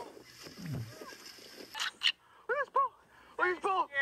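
Excited voices shouting short, high-pitched exclamations, with a brief sharp noise shortly before two seconds in.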